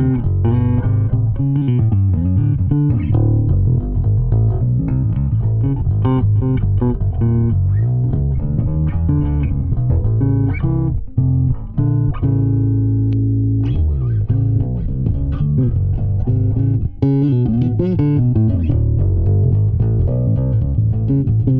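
Ibanez SR305EB five-string electric bass with passive PowerSpan dual-coil pickups, played fingerstyle in a run of quick plucked notes. About twelve seconds in, one note is held and left to ring out before the run picks up again.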